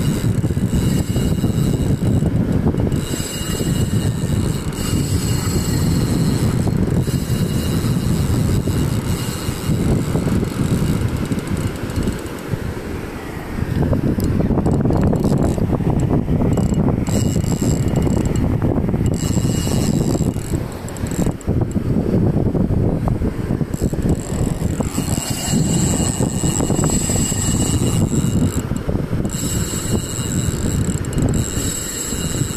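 Spinning reel being worked during a surf-fishing fight, its mechanism giving a thin high whine that comes and goes, over heavy wind rumble on the microphone and breaking surf.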